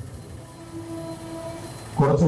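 A steady horn-like tone with a few overtones, held for about a second from about half a second in, faint under a low background haze.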